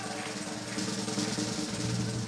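Live band music playing, with held low notes and light drumming.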